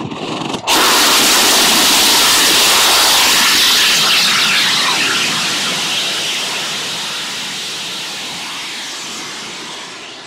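Spectra liquid-fuel rocket engine, a hypergolic engine burning white fuming nitric acid oxidizer, firing on a static test stand. A fainter hiss gives way less than a second in to a sudden, loud, steady roar that slowly fades over the following seconds.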